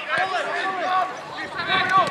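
Several voices shouting and calling out across a football pitch during open play, in short overlapping calls.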